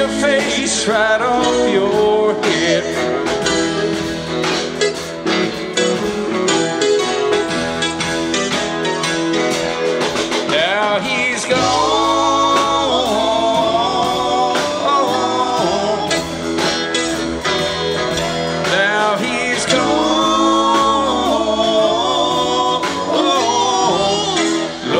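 Live rock band playing an instrumental passage: electric guitar, keyboards and drums. From about eleven seconds in, a sustained melodic lead with bending, sliding notes rides on top.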